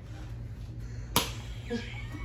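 A single sharp snap about a second in, short and crisp, standing out against quiet room sound; a faint voice comes in near the end.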